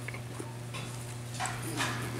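A steady low electrical hum with two short breathy noises about one and a half seconds in.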